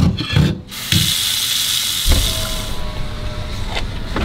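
A plate and fork handled in a stainless steel sink: a few short clinks and knocks in the first second, then a steady scraping hiss for about two seconds.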